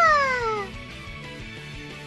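A single high call that starts sharply and glides down in pitch for about a second, over quiet background music.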